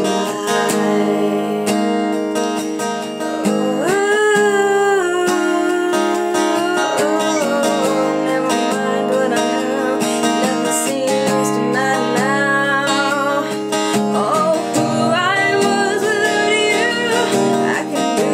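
Woman singing over strummed acoustic guitar chords.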